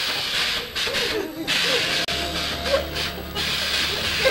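Steady hissing, broken by several short gaps, with faint voices underneath and a low hum joining about halfway through.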